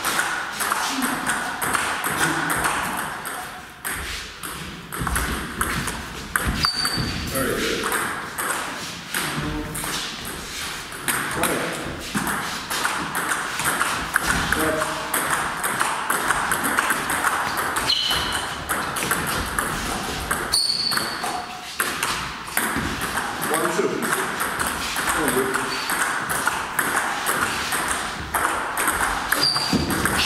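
Table tennis rallies: a celluloid-type plastic ball clicking off the bats and the table in quick runs of hits, with short pauses between points.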